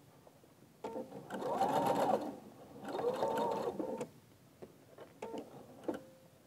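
Electronic sewing machine stitching a seam through layered quilt fabric in two short runs, the motor speeding up and slowing down each time, with a pause between.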